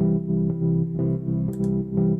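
EZkeys Electric 200A, a sampled Wurlitzer 200A electric piano, playing a repeated chord pattern in a steady quarter-note rhythm.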